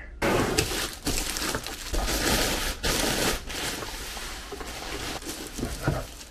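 Clear plastic bag crinkling and rustling as a boxed computer is handled and lifted out of its wrapping. The crackle starts abruptly and is loudest for the first three seconds or so, then settles lower.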